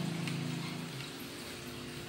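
A child's drawn-out, steady 'uhh' for about the first second, then a steady background hiss.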